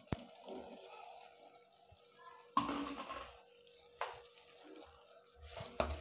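Sliced tomatoes going into a metal cooking pot of meat and peppers: a few sudden knocks and soft wet sounds, one near the start, a louder one about two and a half seconds in and another about four seconds in.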